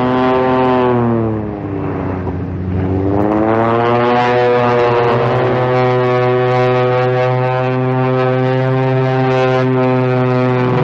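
Biplane's piston engine droning in flight, its pitch falling over the first two seconds as it briefly quietens, then rising again and holding steady.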